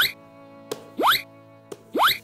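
Cartoon-style 'bloop' sound effects: a short click followed by a quick upward-sliding pop, repeating about once a second, three in all, over soft steady background music.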